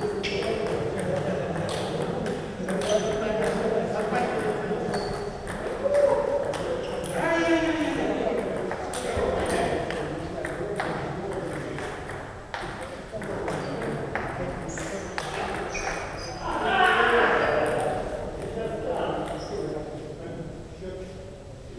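Table tennis ball clicking back and forth off the bats and table in rallies, with short gaps between points, against voices echoing in a large hall.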